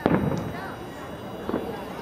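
Two sharp bangs about a second and a half apart, the first the louder, each followed by a short ringing tail.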